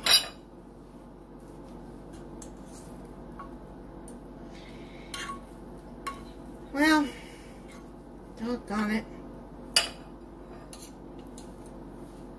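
Metal fork and knife clinking against a glass baking dish while a piece of cheesecake brownie is cut and lifted out: a few sharp, scattered clinks, the loudest right at the start.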